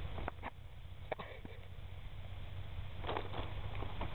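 Low rumble of wind on the microphone, with a few small clicks in the first second and a brief scraping about three seconds in as hands work a knife into a grapefruit's peel.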